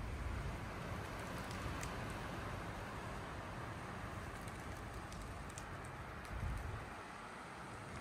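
Quiet, steady outdoor background hiss with no distinct events, and a brief soft low rumble about six and a half seconds in.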